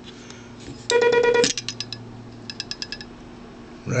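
Semi-automatic telegraph key (bug) sending a quick burst of dits heard as a buzzy pulsing oscillator tone for about half a second. The pendulum's contacts then tick a few times, with a fainter run of quick ticks later on. The pendulum damper is being set so that the pendulum stops after a short string of dits instead of vibrating on.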